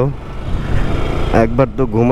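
Rushing wind and road noise from a moving motorcycle, with wind on the microphone and a low rumble underneath, loud and steady; the rider's voice comes back about one and a half seconds in.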